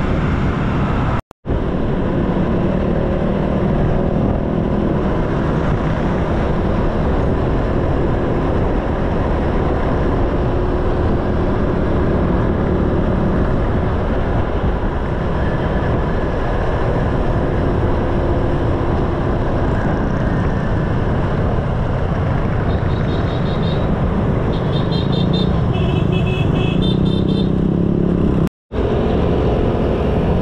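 Honda scooter under way in traffic: engine running steadily under heavy wind and road noise. A few short high beeps come late on, and the sound cuts out completely for a moment twice.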